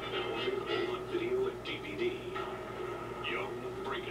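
A voice on a film trailer's soundtrack, played back from a VHS tape.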